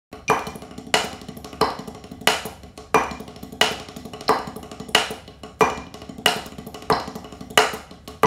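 Wooden drumsticks on a rubber practice pad playing a fast paradiddle-diddle-diddle groove: a strong accent on every beat, about one and a half a second, with rapid quieter strokes in between.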